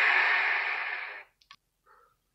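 Audience applause, a steady wash of clapping that fades and cuts off a little past the first second, followed by a faint click.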